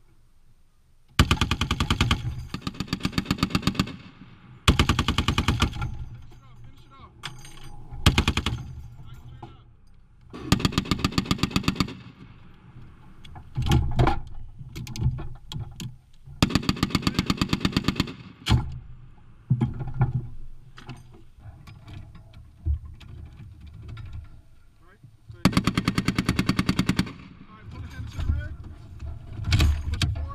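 Browning M2 .50-calibre heavy machine gun firing six bursts of automatic fire, each about one to three seconds long, the first the longest, heard up close from the gunner's position.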